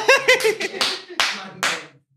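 A man laughing out loud in short bursts, then three sharp hand claps in quick succession.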